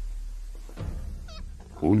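Animal sounds: a low rumbling growl fades away, then a brief high, wavering squeal comes about a second and a half in.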